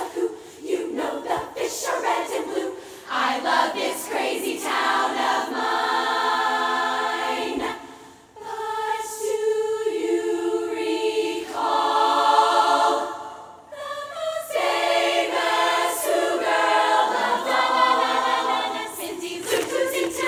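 Women's choir singing a cappella: full held chords in several parts, with brief dips in level about eight and fourteen seconds in.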